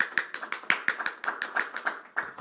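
Scattered hand clapping from a small group: fast, irregular claps that thin out near the end.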